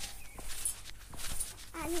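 A child bouncing on a trampoline: several short thuds as her feet land on the mat.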